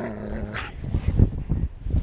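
Alaskan Malamute giving a low, held vocal note as it jumps up at the person in play, then muffled knocks and rustling as its paws land against the jacket and the snow.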